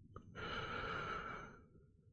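A man's long sigh, one audible breath out close to the microphone lasting about a second and a half, with a small click just before it.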